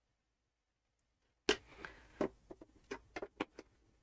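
Dead silence for about a second and a half, then a quick run of irregular sharp clicks and brief rustles from hands handling things close to the microphone.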